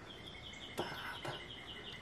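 A faint, high-pitched trill on two steady pitches, pulsing rapidly for about a second and a half, with a couple of light clicks in the middle.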